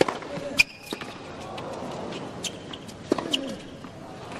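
Tennis rally on a hard court: a serve struck at the start, then several sharp racket hits and ball bounces, with short high shoe squeaks, over steady arena crowd noise.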